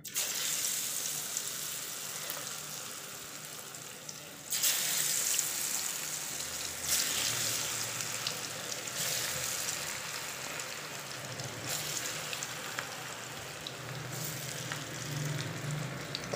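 Pakoras of batter-coated potato strips deep-frying in hot oil in a wok: a steady sizzle that surges louder several times as fresh handfuls are dropped in.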